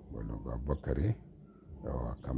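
Speech: a man talking in short phrases, with a brief pause in the middle.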